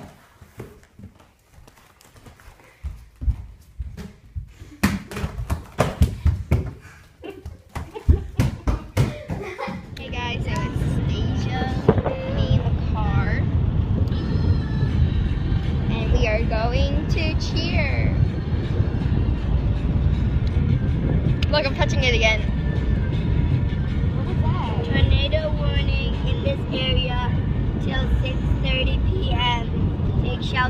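Scattered thumps and knocks of children tumbling on a floor mat. From about ten seconds in, the steady low rumble of a moving car heard from inside the cabin.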